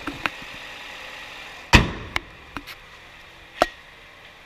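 The hood of a Nissan Versa hatchback slammed shut: one loud slam a little under two seconds in, with several lighter clicks and knocks before and after it.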